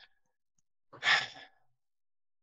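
A man sighing once, an audible breath lasting about half a second, about a second in.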